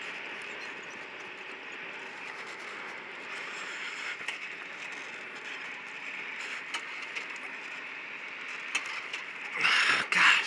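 Gas-powered racing go-kart running, heard through its onboard camera as a steady, muffled mix of engine and wind noise, with a louder rush near the end.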